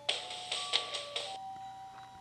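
Robot dog toy sounding through its built-in speaker: a short electronic tune of held beeping notes stepping between pitches, with a busier patter of blips in the first second or so.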